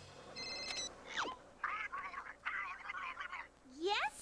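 Cartoon sound effects: a brief high ringing tone, a quick falling whistle, then about two seconds of high, unintelligible, chattering voice sounds, with a rising glide near the end.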